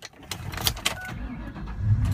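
Key clicks in the ignition and a brief chime, then the 2004 Ford Mustang Mach 1's 4.6-litre DOHC V8 starts about a second and a half in, heard from inside the cabin, its low rumble building near the end.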